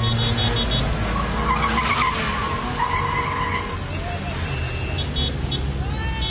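Cars going by on a busy street at night, engines running steadily. A wavering high squeal runs from about one to four seconds in, and short rapid beeps sound near the end.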